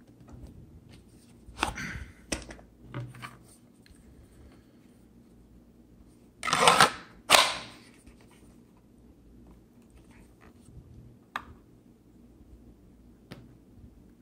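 FN 509 pistol being pushed into and drawn from a hard plastic outside-the-waistband holster: scattered clicks and knocks of handling, then two louder scraping snaps a second apart, as the holster's retention is tested.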